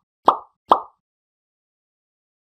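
Short pop sound effects from an animated end screen, each marking an icon popping onto the screen: the tail of one at the very start, then two more about half a second apart within the first second.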